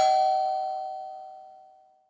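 A bell chime struck once, its two lower tones and higher overtones ringing out together and fading away over about two seconds. It is a title-card sound effect.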